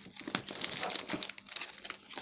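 Plastic bags and grocery packaging crinkling and rustling as items are handled and pulled out, a dense run of irregular crackles.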